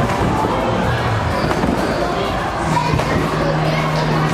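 Busy trampoline-park hall: background music and people's voices echoing in a large room, with a few thumps of bouncing on the tumble track.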